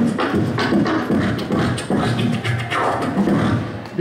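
Human beatboxing into a handheld microphone: a steady rhythm of deep kick-drum-like thumps and sharper snare-like hits made with the mouth.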